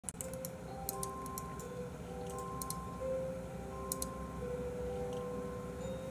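Gentle background music, a slow melody of held notes, with a few small clusters of light computer clicks in the first four seconds.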